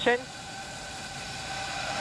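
Falcon 9 rocket's nine Merlin 1D engines firing at ignition on the pad: a steady rushing noise that grows slowly louder.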